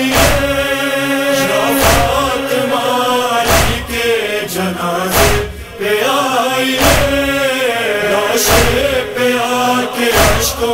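Noha recitation: male voices chanting a drawn-out, wordless-sounding melody, marked by a heavy thump about every one and a half to two seconds that keeps a slow, steady beat.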